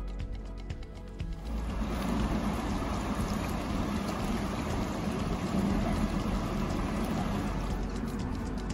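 Background music, cut off about a second and a half in by the steady rush of the River Derwent flowing.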